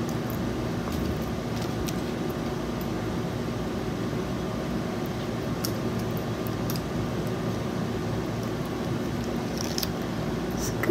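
Electric fan running steadily, a constant hum and rush of air, with a few faint short clicks.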